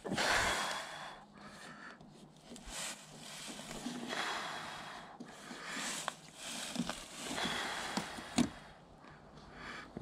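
A man breathing audibly close to the microphone, in soft swells about every two seconds, with a few light clicks and taps in between.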